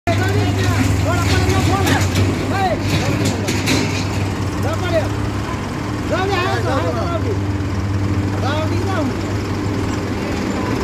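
Mahindra Arjun tractor's diesel engine running steadily at idle, with people's voices calling over it and a few sharp knocks in the first few seconds.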